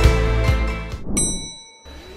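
Intro music with a steady beat, about two beats a second, fades out in the first second. A single bright chime then dings once and rings briefly.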